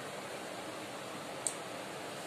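Steady even hiss of kitchen background noise, with one short light click about one and a half seconds in.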